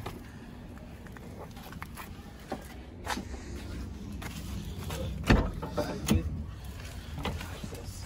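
Handling noise with a few sharp knocks, scattered through, as a car seat is moved and fitted into the car's interior, over a low steady hum.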